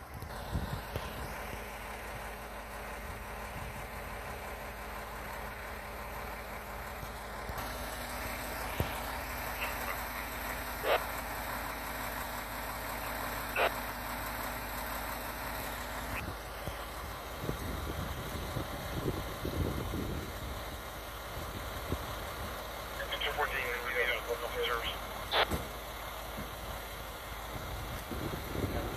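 A parked Pierce fire engine idling steadily. A higher steady hum joins for several seconds in the middle, and there are a couple of sharp clicks.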